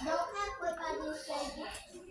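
Speech only: a person's voice talking quietly in the background.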